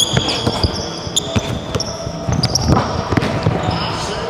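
A basketball bouncing repeatedly on a hardwood gym floor during a live dribble move. Sneakers squeak in short, high bursts as the players cut and slide.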